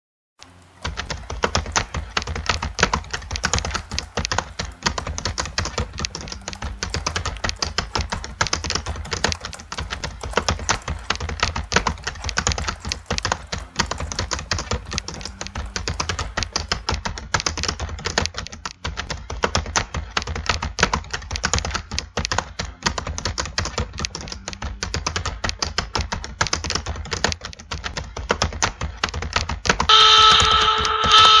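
Rapid, continuous typing on a computer keyboard over a steady low hum, starting about half a second in.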